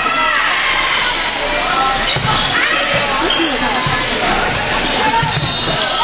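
Indoor volleyball rally in a large gym: sneakers squeaking on the court, players calling out, and a few thuds of ball contacts or footfalls, all echoing in the hall.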